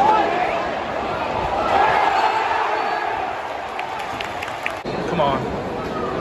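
Football stadium crowd: a loud, steady mass of many fans' voices, with a few sharp handclaps near the middle. The sound breaks off abruptly about five seconds in and picks up again.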